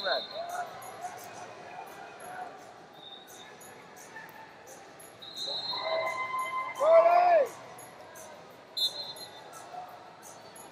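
Wrestling arena sounds: scattered shouting voices, one loud drawn-out shout about seven seconds in, brief high referee-whistle blasts, and faint knocks of bodies and feet on the mats.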